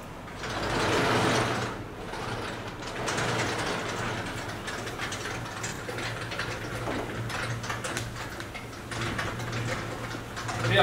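Sliding blackboard panels being shifted up and down in their frame, with a loud scrape about a second in and then a long run of rattling from the runners and counterweight mechanism. Near the end a felt eraser rubs across the board.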